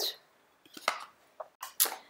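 A few short, light clicks and taps of plastic makeup palettes being handled and set down, about a second in and again near the end.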